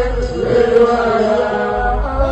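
A man singing an Akan (Twi) gospel praise song through a microphone and PA, holding long notes that slide between pitches, over a steady low accompaniment.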